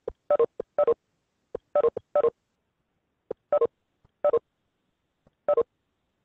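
A video-conferencing app's leave chime repeating as participants drop off the call: about seven short two-note chimes, each falling in pitch, at uneven intervals, most with a faint click just before.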